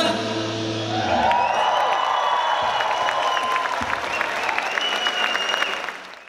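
Live concert audience applauding and cheering as the band's last held note stops about a second in; the applause fades out near the end.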